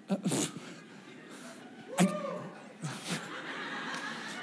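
Scattered laughter and voices from a congregation in a lull between words: a short laugh near the start, then a sharp tap about two seconds in followed by a single brief vocal call that rises and falls in pitch.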